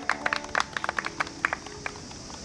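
A small audience clapping: scattered, irregular hand claps, while the last guitar chord of the song rings on and fades out.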